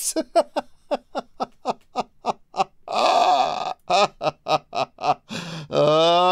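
Hearty laughter: a quick run of short laugh bursts, about four a second, a breathy gasping stretch about three seconds in, more bursts, then a long drawn-out laugh that rises slightly in pitch near the end.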